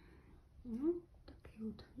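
Only speech: a woman saying a few soft, half-whispered words, with brief pauses between them.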